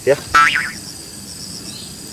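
Insects in dry woodland chirping in a high, rapid pulse of several chirps a second. A short pitched sound rises and falls in the first half-second.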